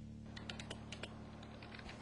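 Faint typing on a computer keyboard: a run of light, irregular key clicks over a steady low hum.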